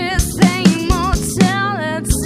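A band playing a song: a steady drum-kit beat, about four hits a second, under guitar and a lead melody line held with vibrato.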